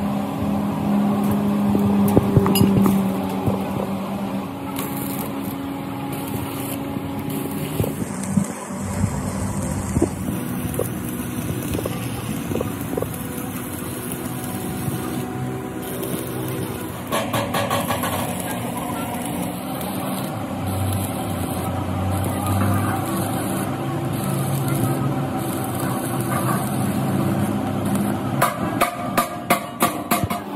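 Metal-workshop noise: a steady machine hum with shifting low tones, joined midway by the crackle of stick arc welding on steel mesh. A quick series of sharp clicks comes near the end.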